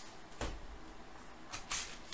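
Cardboard trading-card boxes handled and set down on a table: two soft knocks, about half a second in and near the end.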